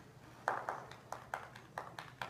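Hand clapping: a quick run of sharp claps, about four or five a second, starting about half a second in.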